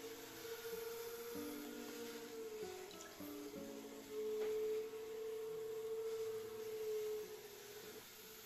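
Quiet background music of slow, held notes, several sounding together and changing every second or so.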